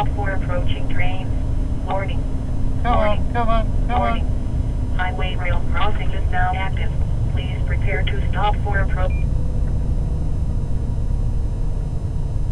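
A voice talks until about nine seconds in, over the steady low rumble of a road train's engine and tyres heard from inside the cab.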